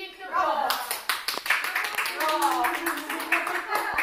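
A small group clapping, the claps starting about half a second in and running on fast and uneven, with voices calling out over them.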